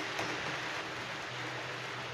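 Steady hiss of heavy rain, even throughout, with one faint click just after the start.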